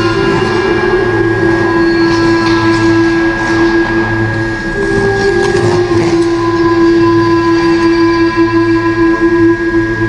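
Figure-skating program music of long, sustained held notes, with the main note shifting pitch about halfway through and back again.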